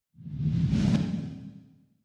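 A whoosh sound effect with a low rumble under it: it swells in just after the start, peaks about a second in and fades away before the end.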